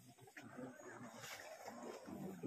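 Quiet outdoor background with faint, indistinct voices of people nearby.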